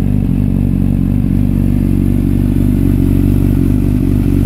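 2008 Honda CBR600RR's inline-four engine idling steadily through an Arrow aftermarket exhaust silencer.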